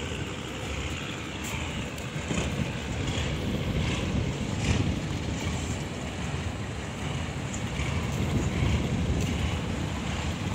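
Wind buffeting the phone's microphone: a low, uneven rush that swells and eases, over a faint outdoor background.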